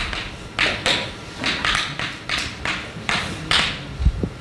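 Chalk writing on a blackboard: an uneven run of about ten short scratching, tapping strokes as a word is written.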